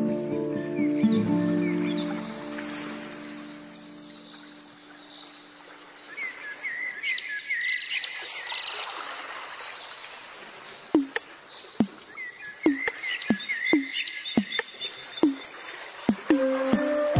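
Soft flute-like music fades out over the first few seconds. Birds then chirp in short repeated phrases, in two spells. A run of sharp clicks comes in the second half.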